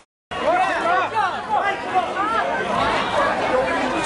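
Many people's voices talking over one another in a crowd, after the sound cuts out for a moment at the very start.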